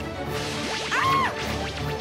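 Cartoon sound effects over background music: a quick swish, then a short high tone that rises and falls about a second in.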